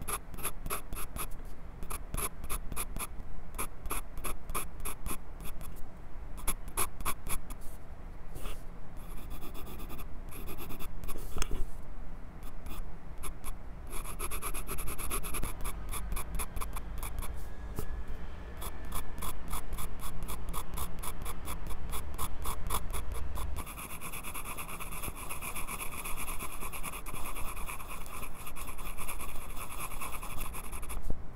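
Graphite pencil scratching on sketchbook paper, picked up very close by a lapel microphone clipped to the pencil. Quick short strokes come several a second, alternating with stretches of unbroken scratching in the middle and near the end.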